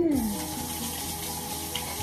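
Kitchen tap turned on, water running steadily into the sink. It starts suddenly at the very start, together with a short falling vocal sound.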